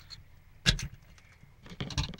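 Small clicks and knocks from a plastic LED bulb housing being handled while a screwdriver pries at its LED circuit board: one sharp click a little under a second in, then a few quicker clicks near the end.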